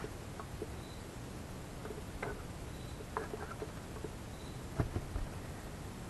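A few soft taps and clicks as a paint-filled plastic cup and a small canvas are flipped over and set down on the work surface, over a faint steady hiss.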